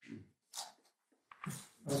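A few faint, short vocal sounds and breaths, about four brief bursts with gaps between them.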